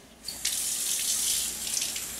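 Water running from a kitchen faucet into the sink, a steady rush that starts about a quarter of a second in.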